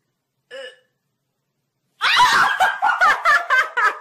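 A brief kitten meow, then about halfway through a person bursting into loud, high-pitched laughter in a quick run of about eight bursts.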